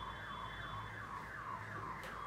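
A faint electronic alarm-like tone that sweeps down in pitch about twice a second, over a low steady hum.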